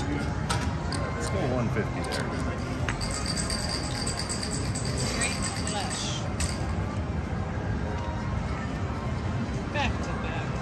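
Casino chips clicking and clinking as they are handled on the table, a few sharp clicks in the first three seconds, over a steady casino din of background music and chatter. A high electronic chiming runs from about three seconds in until past six seconds.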